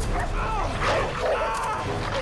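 Several dogs barking and yelping in a staged attack on a man lying on the ground, with short pitched calls coming one after another.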